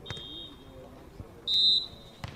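Referee's whistle blowing two steady high blasts: a fainter one at the start and a louder, shorter one about a second and a half in.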